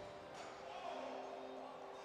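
Faint arena sound just after a goal: distant music with a few held notes over low crowd noise.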